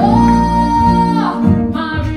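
Church praise-and-worship team singing with instrumental accompaniment. A voice holds one long high note for about a second over the band, then the melody moves on.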